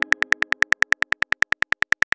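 Keyboard click sound effects of a texting app as a message is typed: a fast, even ticking of about eight clicks a second.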